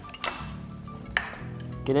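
Two sharp clinks of chopsticks against a ceramic bowl, the first ringing briefly, over steady background music.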